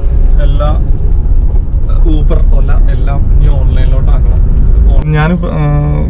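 A man talking over the steady low rumble of a car cabin on the move: road and engine noise under the voice.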